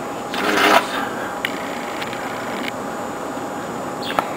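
A dog boot's strap pulled open on a hind paw: one short rasp about half a second in.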